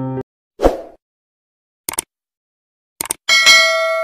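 End-screen sound effects. Piano music cuts off, then comes a short whoosh, a quick double click, another cluster of clicks, and a loud bell ding that keeps ringing.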